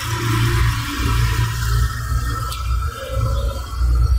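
Soft ambient synth music from the Windows 10 setup screen playing through the computer's speakers, with a strong low hum beneath it that dips briefly a couple of times.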